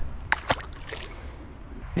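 A small bass released back into the pond: two short splashy knocks about a third and half a second in, then faint rustling.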